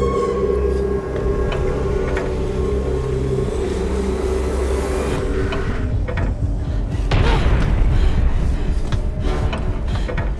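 Horror film soundtrack: a held, droning score with a low hum. About halfway through it gives way to a louder rumble with scattered knocks and scrapes.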